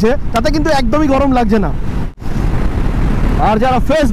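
A man talking over the steady wind and riding noise of a KTM 390 Adventure motorcycle at highway speed. The sound cuts out sharply for a moment just after halfway, then only wind and road noise are heard for about a second before the talking resumes.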